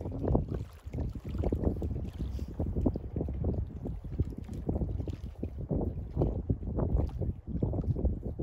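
Strong gusty wind buffeting the microphone: a low, uneven rumble that surges and eases with each gust.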